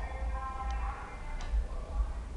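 Pancadão music from a neighbour's sound system, heard indoors at a distance: mostly heavy bass beats, with a faint melody above. It is the noise nuisance being recorded as evidence.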